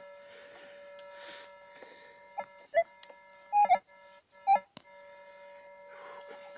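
Metal detector's steady faint threshold hum with about four short, loud signal beeps in the second half as the search coil passes over the dug hole.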